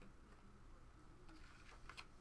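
Near silence with a few faint, soft clicks of trading cards being slid and flipped through in the hands, mostly in the second half.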